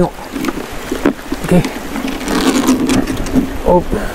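A gill net being hauled by hand over the side of a small boat on a fast river: water sloshing against the boat under a steady low rumble, with a few short knocks about half a second, one second and one and a half seconds in.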